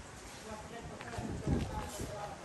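Footsteps on dirt and broken brick, with a few low knocks about one and a half seconds in, under faint voices.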